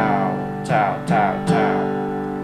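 Acoustic guitar strummed in down-strokes: a chord rings from the start, then three more are struck in quick succession from just over half a second in, the last left ringing.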